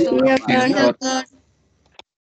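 A voice speaking a few words over video-call audio for about the first second, then near silence with one faint click at the end.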